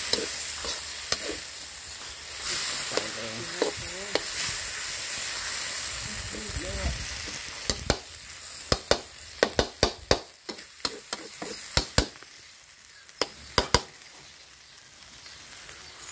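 Rice noodles (mee Korat) stir-frying in a wok over a strong flame: a steady sizzle, fuller in the first half. The spatula clacks and scrapes against the wok in quick runs of sharp strikes in the second half.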